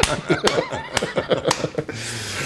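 Men laughing, broken into short bursts, with a few sharp smacks about every half second.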